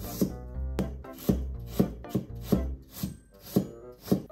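Chef's knife slicing through a carrot onto a plastic cutting board: about eight crisp cuts, roughly two a second. Soft background music plays underneath.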